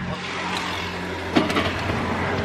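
Auto-rickshaw's small engine running steadily with road and traffic noise, heard from inside the open cab.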